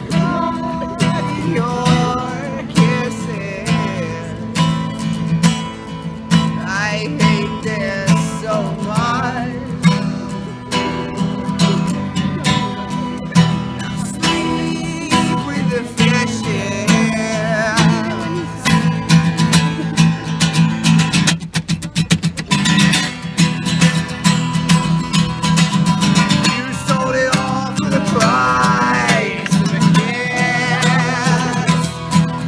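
Acoustic guitar strummed steadily in a live song, with a man's singing voice over it in places. About twenty-two seconds in comes a short flurry of fast strums.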